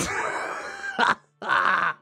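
A person's breathy, wheezing laughter: one long exhaled wheeze that fades, then two short bursts of breath.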